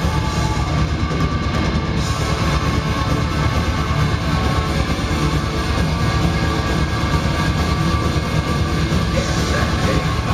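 Black metal band playing live: distorted electric guitars and drums in a dense, steady wall of sound, recorded from within the crowd.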